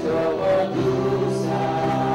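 A live worship band playing a praise song, with several voices singing together over the instruments; the notes are held long from about a second in.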